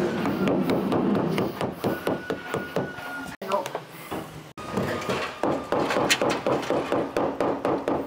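Rubber mallet tapping a rubber window filler trim into place around the glass in a steel door: quick light taps, several a second, with a short pause about halfway through.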